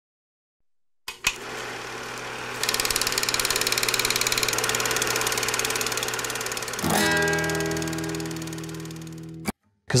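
Guitar music that starts about a second in, plays a fast, even repeated figure, then strikes a chord that rings and fades before cutting off suddenly just before the end.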